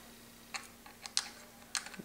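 About four faint, sharp clicks as a small screwdriver works the side screws out of a laptop hard drive's metal caddy.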